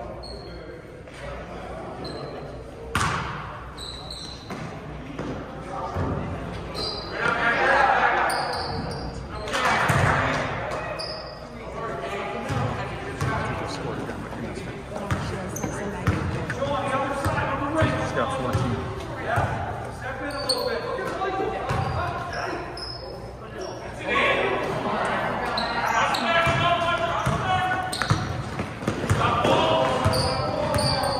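A basketball being dribbled on a gym floor, with repeated bounces, amid voices from players and spectators echoing in a large hall.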